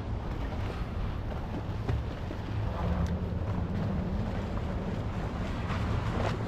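Wind buffeting the microphone in a steady low rumble, with no let-up or change through the few seconds.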